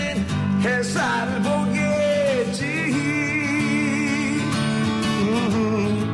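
Music: a singer's voice carries a melody over strummed acoustic guitar, holding long wavering notes.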